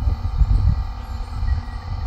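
Wind buffeting the microphone: an uneven low rumble.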